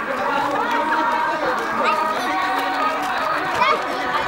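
Crowd chatter: many voices talking and calling out at once, overlapping.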